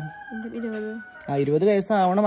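A rooster crowing in the background: one long, drawn-out call through the first second and a half. Speech begins over its tail.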